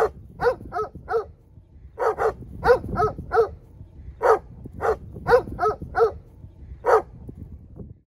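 Livestock guardian dogs barking in quick runs of three to five barks, about fifteen barks in all, the last a single bark near the end, over a low rumble.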